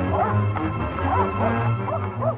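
A dog yelping repeatedly, a few short high yips a second, over background music.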